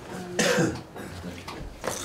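A person coughing once, loudly, about half a second in, with a short knock near the end.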